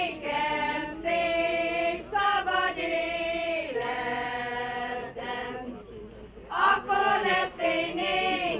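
Small amateur choir, mostly women's voices, singing a Hungarian Christmas song a cappella in long held notes, with a short pause for breath about six seconds in.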